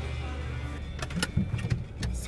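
A low, steady motor rumble with a few knocks in the second half, and music under it.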